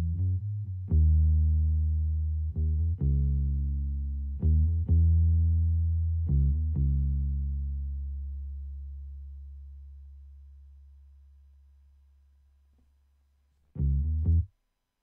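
Sampled Rickenbacker electric bass (Native Instruments Scarbee Rickenbacker Bass, palm-muted preset) playing a short solo line of low plucked notes. The tone is darkened for a warm, full sound rather than a bright one, and the last note rings out and fades slowly before one more short note near the end.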